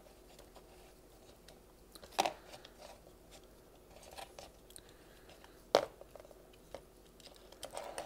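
Hard plastic parts of a toy robot figure and its detachable gun clicking and knocking as they are handled and set down on a table: a few light clicks and one sharper click about three-quarters of the way through, with handling rustle near the end.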